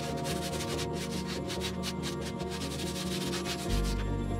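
Bonsai pot being sanded by hand before painting: rapid back-and-forth rubbing strokes of sandpaper on the pot's surface, stopping near the end. Background music plays throughout.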